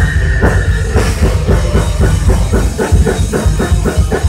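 Live heavy metal band playing loud with electric guitars, bass and drum kit: a long high note is held through the first second, then the band breaks into a fast, evenly chugged riff with the drums.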